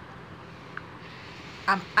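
A pause in a woman's talk: low steady background hiss, then her voice resumes near the end.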